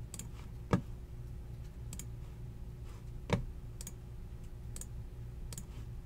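Sparse clicks from a computer mouse and keyboard, with two louder knocks, one a little under a second in and one just past three seconds, over a steady low hum.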